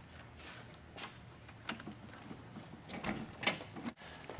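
Quiet handling noise: soft clicks and rustles of a test lead being plugged into and handled at a handheld lab scope, with a few sharper clicks near the end.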